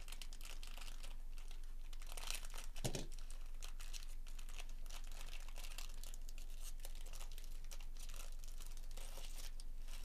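Trading-card pack wrapper crinkling and tearing as it is pulled open by hand, with a louder burst of crackling and a thump about three seconds in.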